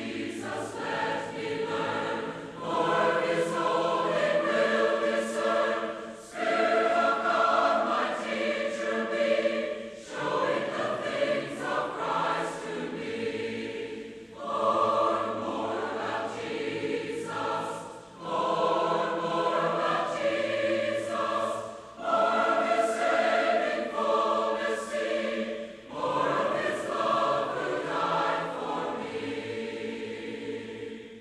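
A choir singing in phrases of about four seconds each, with short breaks between them.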